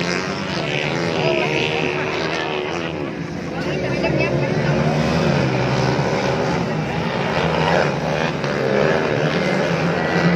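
Several motocross bikes at a distance, their engines revving and dropping as they race around a dirt track, the pitch rising and falling throughout.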